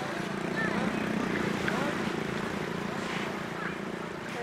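Faint voices in snatches over a steady low hum and an even background noise.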